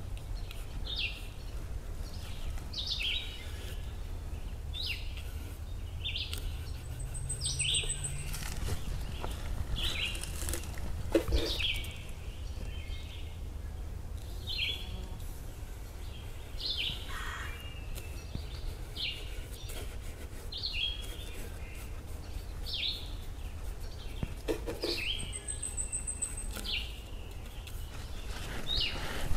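Woodland ambience: a short, high chirping call repeated about once a second, with two brief very high trills and a steady low rumble underneath.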